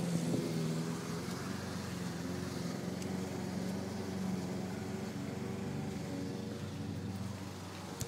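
A motor vehicle's engine idling steadily.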